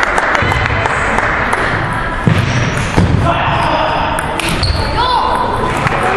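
Table tennis ball clicking against paddles and the table in a fast rally: a quick series of sharp clicks with the echo of a large sports hall.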